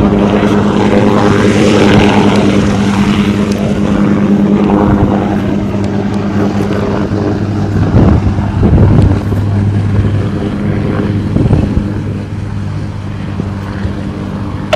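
UH-1Y Venom helicopter's four-blade main rotor and twin GE T700 turboshaft engines running as it comes in low and sets down: a loud, steady hum from the rotor and turbines, swelling briefly about two-thirds of the way through and easing slightly near the end.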